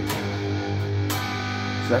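Electric guitar played through distortion, strumming a power-chord riff. One chord is struck at the start and another about a second in, each left ringing.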